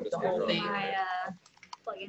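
A voice talks for just over a second, then it goes quiet except for a quick run of light clicks from typing on a computer keyboard.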